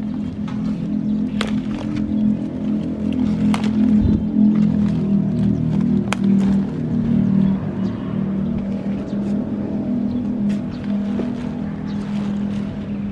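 A motor running steadily with a low, even drone. Sharp snaps and leafy rustles come and go as cauliflower leaf stalks are picked by hand.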